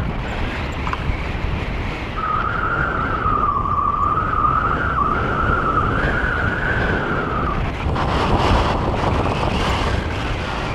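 Wind rushing over the microphone of a camera on a tandem paraglider in flight, a loud steady buffeting. From about two seconds in, a wavering high tone sounds over it for about five seconds and then stops.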